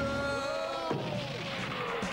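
Cartoon sound effect: a whistle-like tone that slowly falls in pitch, with a sharp knock about a second in.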